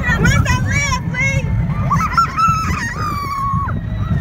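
Roller-coaster riders screaming: a run of short high shrieks, then one long held scream a couple of seconds in that drops off near the end. Under it, a steady low rumble of wind on the microphone and the moving coaster car.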